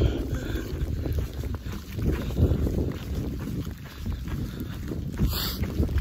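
Strong wind buffeting the phone's microphone, a rough, gusting low rumble that rises and falls in level, with a short sharper burst a little after five seconds in.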